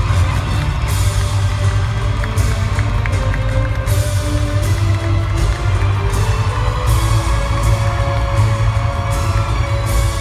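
Loud music over an arena sound system, with a heavy, steady bass beat.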